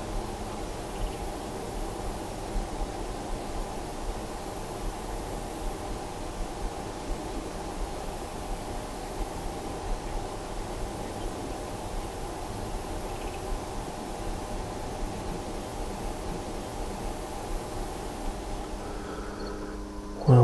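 Steady outdoor field ambience: an even hiss with faint, high-pitched insect trilling.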